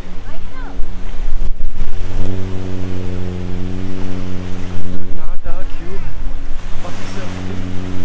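A boat engine running at a steady, unchanging pitch close by, with the hum dropping out briefly twice, over waves washing on the shore.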